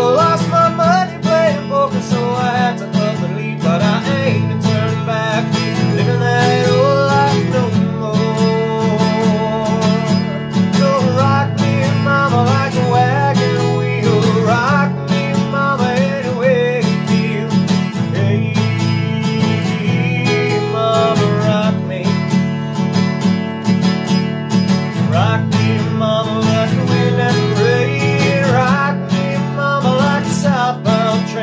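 A black cutaway acoustic guitar strummed steadily, with a man singing over it.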